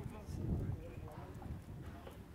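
Faint background voices of people talking, over a low, irregular thumping rumble.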